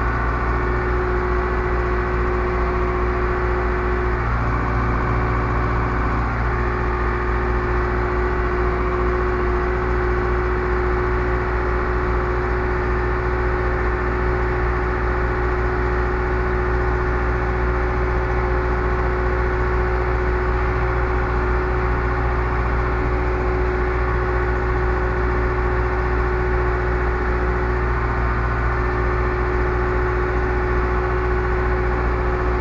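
Zetor Proxima 65 tractor's four-cylinder diesel engine running steadily, with a constant droning tone and no change in speed.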